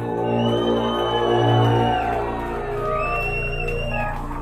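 A live metal band playing a slow atmospheric song intro: long held high notes that each glide up as they begin, over a low droning bass that swells slowly.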